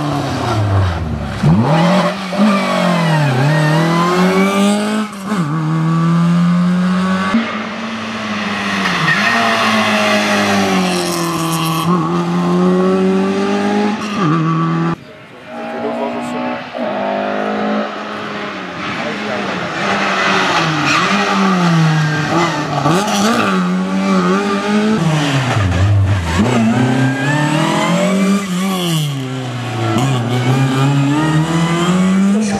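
Lada 2101 rally car's four-cylinder engine driven hard on a rally stage, revs climbing and falling again and again through gear changes and braking, over several passes with a break partway through.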